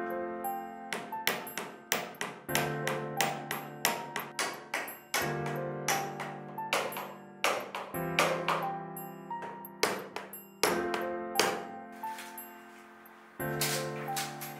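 Steel hammer tapping small nails into a wooden mould, many sharp ringing taps in quick irregular runs, over soft background music.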